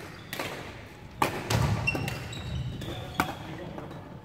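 Badminton rackets hitting shuttlecocks: about four sharp hits spread through, each with a short ring of hall echo.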